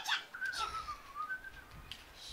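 A single thin whistle lasting a little over a second that starts about half a second in, dips in pitch and then rises again before fading.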